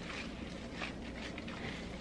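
Faint, soft squishing of raw ground-meat mixture being pressed and shaped by gloved hands in a glass baking dish.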